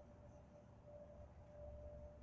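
Near silence: faint low background rumble with a thin steady tone.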